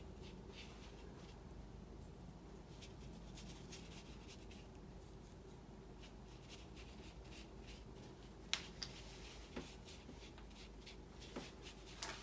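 Faint soft scratchy strokes of a Chinese painting brush working colour across paper, with a few light clicks a little past the middle.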